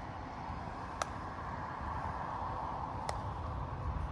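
Two sharp hand claps about two seconds apart, made during clap push-ups off a birch trunk, over a steady hum of distant city traffic.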